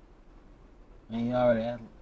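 A man's voice speaking a drawn-out word about a second in, over a faint low hum in the car cabin.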